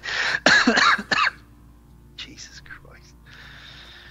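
A man coughs and clears his throat for about the first second, then mutters a few faint words, followed by a soft breathy hiss.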